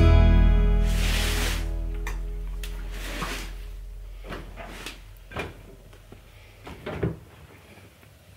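A guitar piece's final chord rings out and fades over the first few seconds. Then come a series of light knocks and rustles of laundry being handled at a front-loading washing machine, with the sharpest knock near the end.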